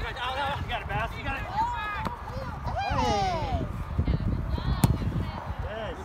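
Players and sideline spectators shouting across an outdoor soccer field, several voices calling over one another. A single sharp thump near the end, the sound of the ball being kicked.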